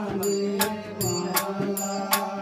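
Live Bengali Baul folk music: a harmonium holds a steady low drone under a melody, while a hand drum and sharp percussion strikes keep an even beat of a little under three strokes a second.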